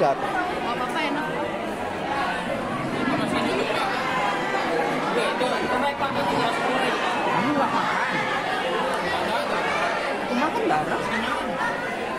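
Steady chatter of many students talking at once, overlapping voices with no single speaker standing out.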